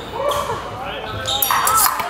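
Fencing footwork stamping and landing on the piste during an advance and lunge, with a sharp metallic clatter of blades about one and a half seconds in as the attack lands. Voices carry from the busy fencing hall in the background.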